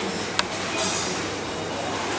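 Steady background noise of the room, an even hiss and rumble, with a single sharp click about half a second in and a brief high hiss just before the middle.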